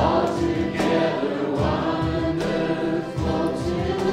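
Worship band playing a slow song: several voices singing together, mostly women's, over acoustic guitars with a steady low beat.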